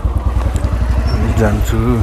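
Motorcycle engine idling with a steady, even beat. A person's voice comes in briefly near the end.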